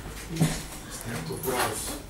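Brief muffled vocal sounds from a person, short pitched murmurs and whimper-like noises with no clear words, mixed with short noisy scrapes.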